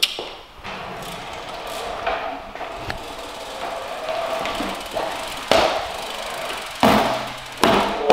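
BMX flatland riding on a wooden floor: tyres rolling and scrubbing, with several sharp thuds of the wheels coming down, the loudest ones in the second half.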